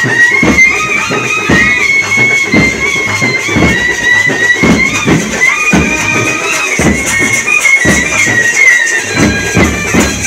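Live karakattam band music: a loud, reedy wind instrument plays a high, wavering melody over a bass drum and other drums beating a steady rhythm of about two strikes a second.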